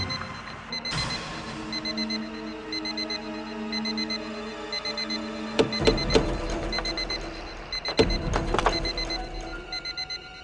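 Electronic alarm beeping in quick groups of short, high beeps, over and over, the alarm that has been sounding from the suspect car. Tense background music plays under it, with several sharp hits.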